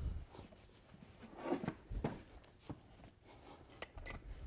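A few faint, sharp clicks of a farrier's steel pulling tool on the nails and steel crease shoe of a draft horse's hind hoof as the nails are worked out.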